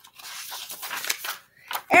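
Paper rustling of a picture book being handled as its page is turned, a little over a second long. A woman's voice begins near the end.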